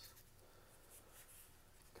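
Near silence, with faint rustling of trading cards being handled and slid past one another.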